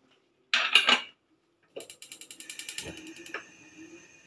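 A brief loud noise about half a second in, then a gas stove's push-button igniter clicking rapidly for about a second and a half until the burner lights.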